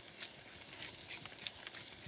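Faint, irregular crackling ticks of a pepper mill grinding black pepper over a pan of simmering tomato meat sauce.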